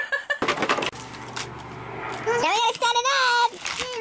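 Cardboard and plastic packaging of a toy playset rustling and tearing as the box is opened, for about two seconds, then a child speaking in a high voice.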